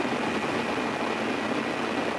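Steady rushing noise with a faint thin high tone running through it.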